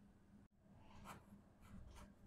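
Faint scratching of a pen on paper as a signature is written: a few short strokes, starting about half a second in.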